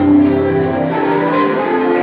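Live worship band music, led by a keyboard playing a melody of held notes that shift about every half second.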